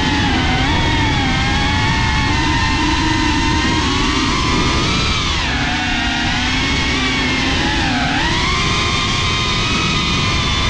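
FPV quadcopter's brushless motors and propellers whining at speed over a rushing hiss, the pitch dipping twice as the throttle is eased, about halfway through and near the end, and climbing again as it is opened.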